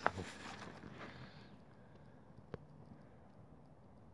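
Faint shuffling footsteps on dirt and phone handling noise, with a single sharp click about two and a half seconds in.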